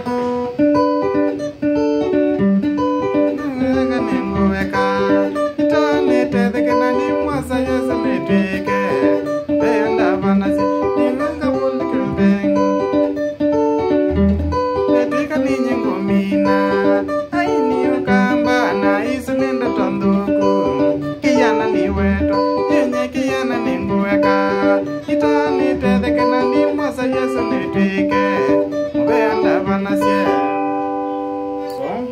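Electric guitar playing a Kamba benga melody: quick single picked notes in repeating runs, with now and then a low bass note.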